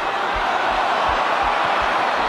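Rugby stadium crowd noise: a steady mass of many voices, with a few soft low thumps underneath.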